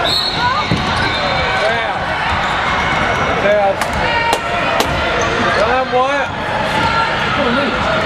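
A referee's whistle blows at the start, one held high tone lasting about a second and a half, as play stops in an indoor basketball game. A basketball bounces on the hardwood court a few times near the middle, about half a second apart, under steady talk and shouting from players and spectators.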